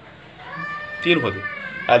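A cat meowing: one long, high-pitched call of about a second and a half.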